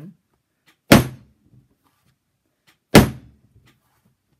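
A block of porcelain clay slammed down on a table twice, about two seconds apart, each a single heavy thud. It is being knocked on the table to loosen up clay that has sat for months.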